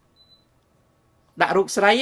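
A man speaking in Khmer after a pause of about a second and a half. A faint, brief high beep sounds early in the pause.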